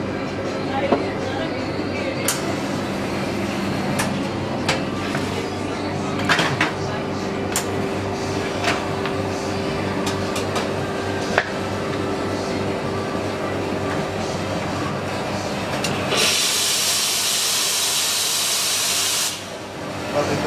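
Espresso machine at work: scattered clicks and clacks of the portafilter and cups being handled, a steady hum through the middle, then a loud burst of steam hissing for about three seconds near the end.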